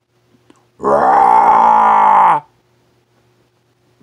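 A man's drawn-out vocal groan, held for about a second and a half, its pitch sagging at the end.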